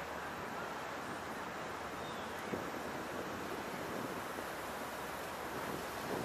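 Steady outdoor noise of wind and distant city traffic, an even hiss with no voices.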